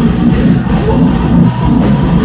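Metalcore band playing live and loud: distorted electric guitars over a drum kit, heard from within the crowd.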